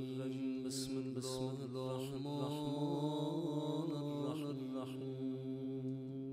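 A melodic vocal chant over a steady, sustained low drone.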